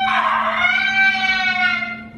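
A woman's long, high-pitched wail, held for nearly two seconds with a slight dip in pitch, a cry of distress from the burn of a Carolina Reaper pepper. A steady low hum runs underneath.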